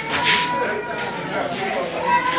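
Indistinct crowd chatter in a hall. About a quarter second in there is a sharp swish of heavy woven rice sacks being dragged and shifted.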